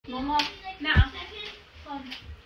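A child's voice speaking briefly, with one loud, sharp thump about a second in.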